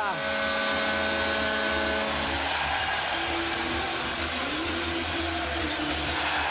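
Ice hockey arena crowd cheering a home goal. Over it, a chord of steady held tones stops about two seconds in, and then a simple low tune of stepping notes plays.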